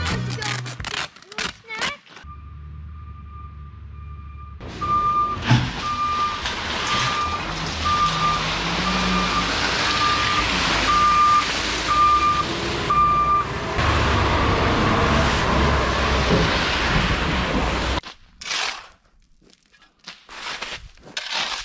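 Dump truck running with its backup alarm beeping about once every 0.7 seconds while gravel pours from the raised bed onto the road fabric in a long rushing spill. The beeping stops about 13 seconds in, and the gravel rush ends near the end, followed by a few short scrapes.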